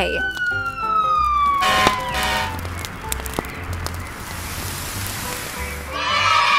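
A fire-truck siren sound effect winding down, one long tone falling slowly in pitch over the first two and a half seconds, over a low pulsing beat.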